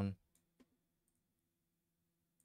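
A few faint computer mouse clicks, short and spaced apart in the first half, over a faint low steady hum.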